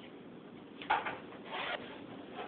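Playing cards handled on a wooden tabletop: a sharp tap about a second in, then a short scraping slide.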